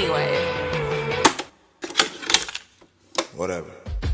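A recording of music and voices cuts off about a second in, followed by a few sharp mechanical clicks and clunks with brief silences between them, like a cassette player being stopped and its tape handled.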